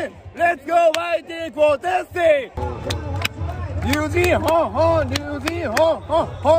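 A man shouting a rhythmic baseball cheering chant, with sharp claps between the phrases. About two and a half seconds in, the chant switches to a new one and a low stadium crowd rumble comes in underneath.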